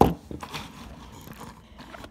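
Handling noise: a sharp knock at the start, then faint rustling and a few small knocks.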